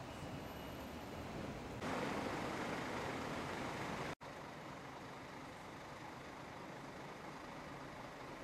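City street traffic noise, a steady rumble and hiss, louder for a couple of seconds from about two seconds in. It cuts off suddenly and gives way to a quieter, steady street hum.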